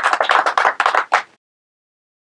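Small audience applauding, the clapping cut off abruptly a little past halfway through.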